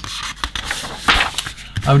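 A paper instruction booklet's page being turned and pressed flat by hand: a papery rustle and rub, loudest about a second in.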